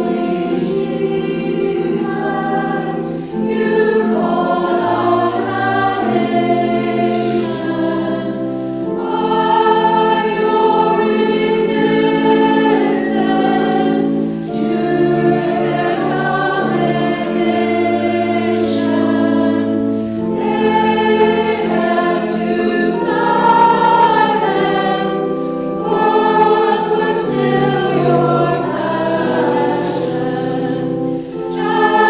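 Church choir of mixed men's and women's voices singing a cantata piece, with long held low notes sounding beneath the voices.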